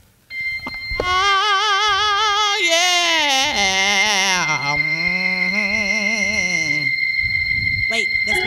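A single sustained musical note with a fast, even wobble: held high for a couple of seconds, then stepping down and sliding lower before levelling off, and stopping near the end. A steady high-pitched whine runs underneath it.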